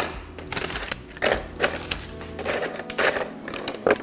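Graham crackers dropped one after another into the plastic bowl of a Cuisinart food processor, a string of light clacks and taps, ending as the lid is fitted on. Soft background music runs underneath.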